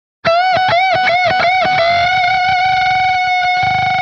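Distorted electric guitar playing a staggered unison bend: the note on the second string's 17th fret is bent up to match the first string's 14th fret and released, the two picked back and forth about four or five times a second. About two seconds in they are sounded together as one held unison note, wavering slightly near the end.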